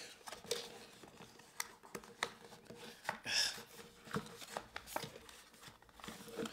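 A cardboard pen box being handled and opened by hand: scattered light taps, clicks and scrapes of paperboard, with a short scraping rustle a little over three seconds in as the tray is worked against the box.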